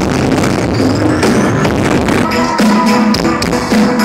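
Live band playing loud pop music through a concert sound system, with a steady drum beat; clear sustained chords come in about halfway.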